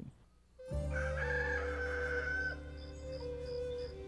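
A rooster crowing once, a long call starting about a second in, over a steady low music drone. Faint high pips repeat about three times a second in the second half.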